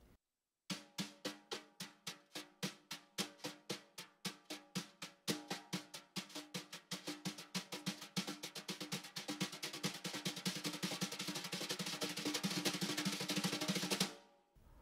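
Wire brushes playing double strokes on a snare drum. The taps start slowly, a few a second, and speed up steadily into a fast, continuous roll near the end.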